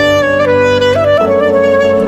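A sad, slow clarinet melody moving through a few held notes over sustained low accompaniment.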